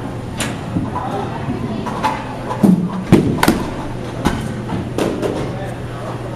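Baseballs being hit in a batting cage: several sharp knocks, the two loudest close together about three seconds in, over a steady low hum, with faint voices between.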